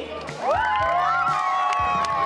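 A group of young girls cheering together in one long, held "yay" at several pitches, with scattered clapping.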